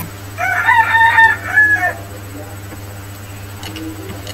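A rooster crowing once, about a second and a half long: a recorded cock-a-doodle-doo from a song video, played over computer speakers.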